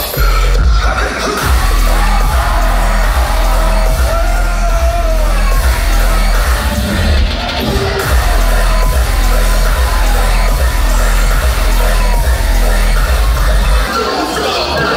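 Dubstep played loud over a club sound system, with a heavy sub-bass that kicks back in at the very start and runs on steadily, and a crowd yelling over it.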